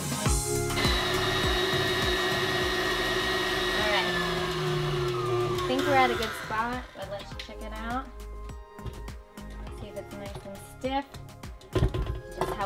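Electric mixer whipping egg whites into meringue, the motor running steadily, then winding down with a falling pitch from about four to six seconds in.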